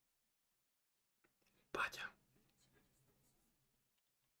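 A man's single short breathy exhale or whisper-like breath close to the microphone, about two seconds in, with near silence before it.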